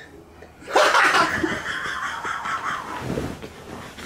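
A man breaking into hard laughter: a sudden loud burst under a second in, tailing off over the next two seconds.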